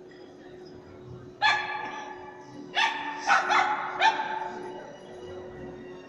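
A dog barking five times, echoing around a large hall: one bark, then after a pause four more in quick succession.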